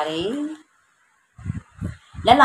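A woman's voice speaking, ending on a drawn-out syllable about half a second in. A brief dead-silent gap follows, then two soft, low thumps.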